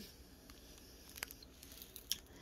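Near silence with a few faint, light clicks and crinkles from small plastic zip bags of square diamond-painting drills being handled.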